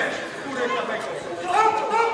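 Several men's voices calling out over one another, with no clear words: shouting from the ringside during a boxing bout.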